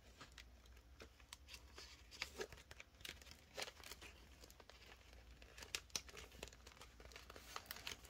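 Faint crinkling and rustling of paper banknotes and a clear plastic binder pocket being handled, in many short, irregular crackles.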